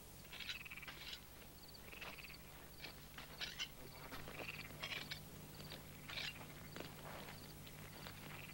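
Faint night ambience of frogs calling in short, repeated chirps and trills, with a low steady hum underneath.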